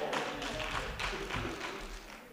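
A series of light taps, about three a second.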